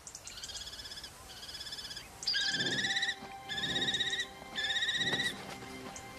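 Kestrels at the nest giving a string of five drawn-out, trilling calls, each under a second long; the last three are louder.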